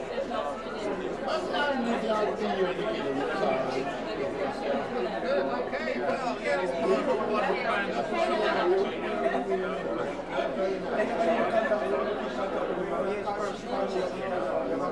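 Many people chatting at once: overlapping voices of men and women with no single speaker standing out.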